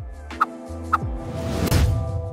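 Short animated-logo sting: electronic music with held synth tones, two quick blips and a low hit about a second in, then a whooshing swell building near the end.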